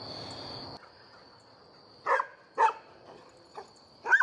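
A dog barks twice, about half a second apart, some two seconds in, then gives a fainter bark near the end, over a steady high chirring of crickets.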